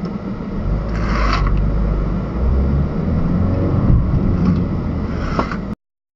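Car engine and vehicle rumble heard from inside a car's cabin, with a short hissing noise about a second in. The sound cuts off abruptly just before the end.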